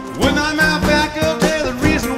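Live acoustic band music, with strummed acoustic guitars, bass and drums, and a male lead vocal that comes in about a quarter second in.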